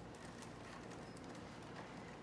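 Faint, scattered clicks and rustles of willow twigs being woven in and out of a willow garden tower by hand.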